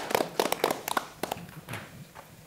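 Scattered hand clapping from a few people, irregular and thinning out, stopping near the end.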